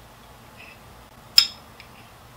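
A spoon clinks once against a bowl as food is scooped, a sharp tap with a short ring, followed by a fainter tick.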